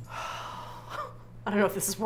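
A woman's long audible breath, a breathy sigh fading over about a second, then a short voiced sound near the end as she starts to speak.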